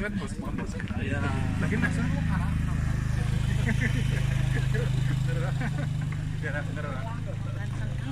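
Several people chatting among a walking group, over a steady low engine hum from a nearby vehicle.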